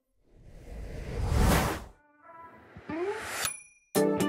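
Logo sting sound effects: a whoosh that swells for about a second and a half and cuts off, then a short run of rising tones that ends in a bright ding near the end.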